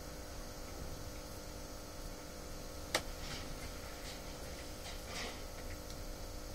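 Low steady background hum with faint steady tones in a quiet pause, broken by a single sharp click about three seconds in.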